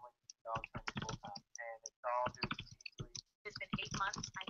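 A person talking in short phrases, with some clicks among the words.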